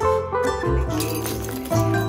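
Background music: a tune of plucked string notes, one after another.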